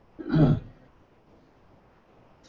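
One short vocal sound from a man, about half a second long near the start, followed by quiet room tone in a large room.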